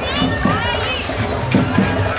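Carnival parade music with a steady drum beat, mixed with children's voices and the noise of the crowd.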